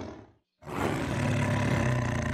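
Sound drops out to silence for a moment, then a steady low roar starts, opening the radio show's intro sequence.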